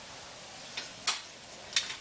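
A few light metal clicks and taps as the bottle jack is shifted on the steel base of a motorcycle lift to line up its bolt holes: one sharper tick about a second in and a couple more near the end.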